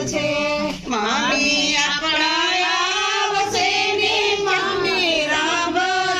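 Women singing a traditional Gujarati ceremonial folk song in long, drawn-out held notes, unaccompanied.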